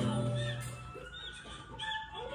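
Animated-film soundtrack heard through a TV speaker: a thudding at the start over background music, fading about a second in, then a character's voice beginning near the end.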